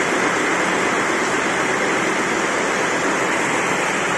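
Steady, loud running noise of sawmill machinery, an even roar with no distinct strokes or rhythm.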